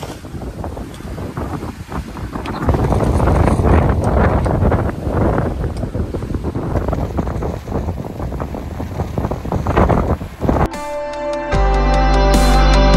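Wind buffeting the microphone over the rush of sea water along the hull of a sailing yacht under way, in gusts that rise and fall. Music starts up near the end.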